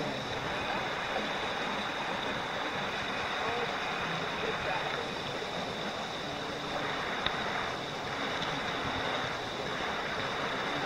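Shallow mountain stream flowing over a gravel and cobble bed, a steady even rush of water.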